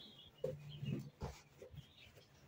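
Large area rug being rolled up by hand on a wooden floor: a few short, irregular rustles and soft bumps of the rug and its backing, with a brief low rubbing tone about a second in.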